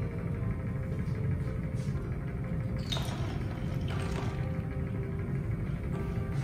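Faint background music over a steady low rumble, with two soft handling noises about three and four seconds in as the flask is lowered into the ice water.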